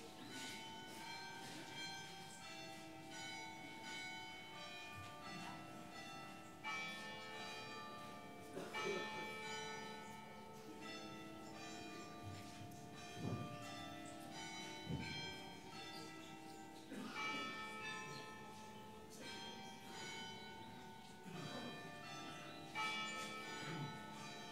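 Church bells of a carillon playing a slow melody. Single notes are struck every second or two, and each rings on over the next.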